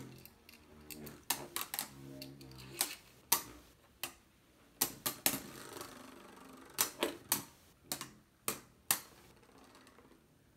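Two Beyblade Burst spinning tops clashing in a plastic stadium: irregular sharp clicks and knocks as they collide and rattle against each other and the stadium wall.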